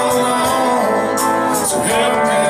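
Live band music: a man singing over electric guitar and bass guitar.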